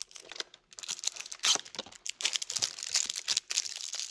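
Plastic wrapper of a Topps 2024 Series 1 baseball card hanger pack being torn open and handled, with irregular crinkling and crackling.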